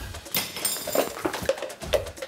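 Kitchen clatter: cookware and utensils being handled as cooking begins, a run of light knocks and clicks.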